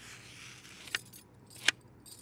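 Chalk scraping faintly on a child's slate, with two sharp taps, one about a second in and one near the end.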